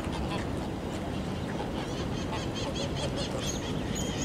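A flock of domestic geese on the water honking, with a quick run of short repeated calls from about halfway in, over a steady low background noise.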